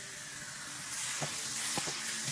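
Water running into a stainless steel sink and rinsing soap suds away: a steady hiss that starts suddenly as the water comes on, with a couple of faint knocks.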